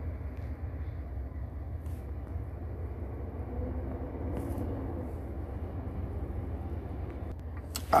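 A steady low background rumble, with no speech.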